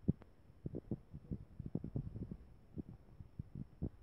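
Irregular, muffled low thumps and rubbing from a handheld phone being moved about, picked up as handling noise on its microphone.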